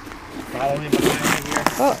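A man's voice exclaiming, with a short burst of clicks and noise about a second in.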